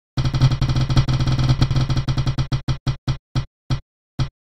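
Spinning-wheel ticker sound effect: a fast run of clicks that slows steadily, the ticks spreading out to about two or three a second near the end as the wheel winds down.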